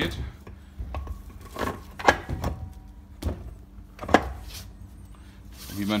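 A scooter's rear wheel turned by hand on its original gearbox, with a handful of irregular short knocks and clunks from the wheel and hub; the gearbox itself turns over quietly, a sign that it is in good order.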